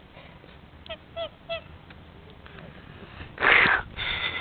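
White domestic duck giving three short calls in quick succession about a second in, followed near the end by a loud, harsh burst of noise.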